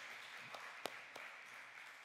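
Light applause from a small congregation, fading away, with a few single claps standing out.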